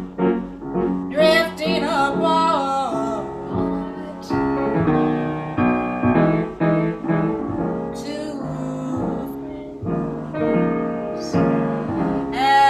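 Small-group jazz recording in waltz time: piano with bass underneath and a lead melody line that bends and slides between notes.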